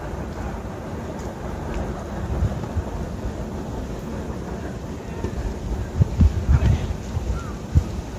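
Wind buffeting an open-air microphone: a steady low rumble with several heavier gusts about six to seven seconds in and one more near the end.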